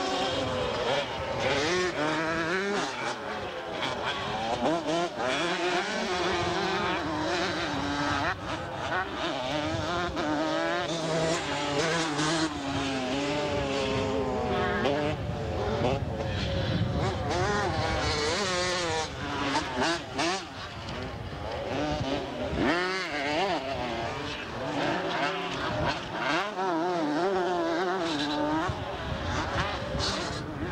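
Several 125cc two-stroke motocross bikes racing, their engines revving up and down as riders accelerate and back off around the track. The pitch of the engines keeps rising and falling throughout.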